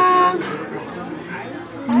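A short voice sound at the start, then low background chatter of a busy room, and an adult's voice beginning right at the end.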